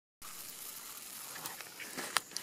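A skinned squirrel sizzling as it cooks on a bed of hot ash and coals: a steady, quiet hiss with a few faint pops, starting just after a brief gap of silence.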